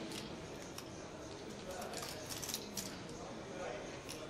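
Poker chips clicking together in quick, irregular clusters as players handle them at the table, over faint background voices.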